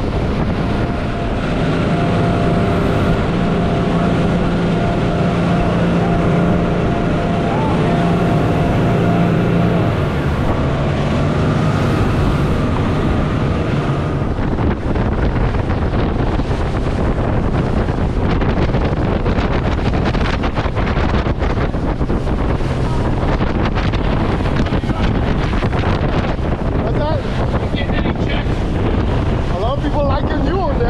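Motorboat running at speed: a steady engine tone over rushing water and wind on the microphone. After about ten seconds the engine tone shifts and fades, and by about 14 seconds mostly wind and water noise remains.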